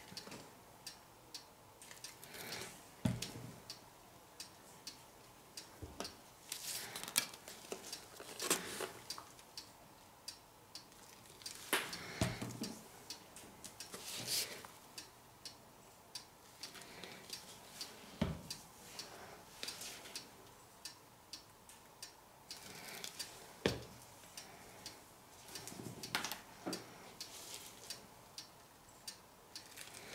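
Plastic squeeze bottles of acrylic paint being handled and squeezed: scattered small clicks and ticks, with a few louder knocks as bottles are picked up and set down.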